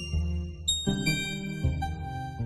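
A basic FM software synthesizer playing a generative note sequence: high sustained tones over low bass notes, with new notes coming in about every half second.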